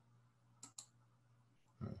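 Two computer mouse clicks a fifth of a second apart, against near silence with a faint steady low hum.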